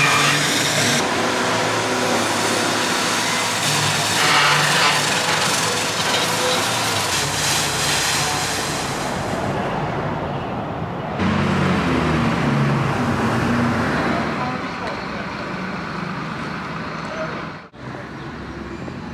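Town-street ambience: road traffic running and people talking in the background, the mix shifting abruptly about a second in and again at about eleven seconds.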